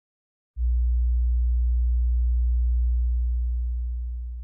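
A deep, steady low tone, like an electronic bass drone, starts suddenly about half a second in and holds, then begins to fade near the end.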